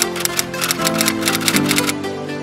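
Intro music with held chords, overlaid with a rapid run of typewriter-style key clicks, several a second, that stops near the end.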